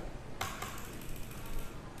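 Quiet room hiss with a single soft click about half a second in, from working the computer at the trading desk.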